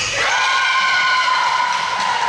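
A long drawn-out shout from a player on the court, held on one pitch for about two seconds after a short slide down at the start.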